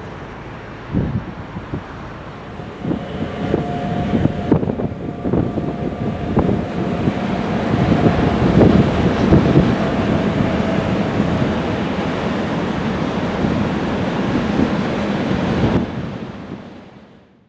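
A train rolling through the station: irregular knocks of wheels over rail joints and a thin steady whine, building up to a peak about halfway through. Heavy wind rumbles on the microphone throughout.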